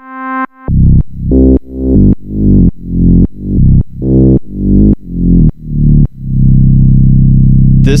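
Korg Electribe 2 synth part playing a deep sine-wave sub bass, made gritty by turning the oscillator's edit control way up rather than by a distortion effect. A short higher note comes first, then about ten repeated low notes roughly every half second, then one low note held from about six seconds in.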